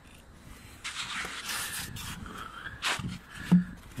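Cardboard box and plastic wrapping rustling and scraping as the packaging is handled, with a sharp knock near the end.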